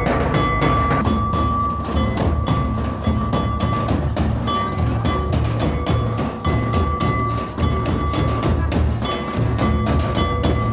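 Two-headed barrel hand drums beaten in a steady, busy dance rhythm. A sustained high note comes and goes in long phrases above the drumming.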